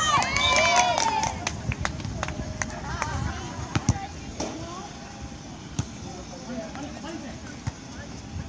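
Players shouting during a volleyball rally, loudest in the first second, with sharp slaps of hands hitting the volleyball every second or two over a background of chatter.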